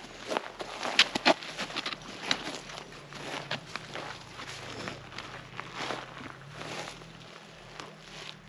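Hiking footsteps crunching irregularly through dry grass and over rocky ground.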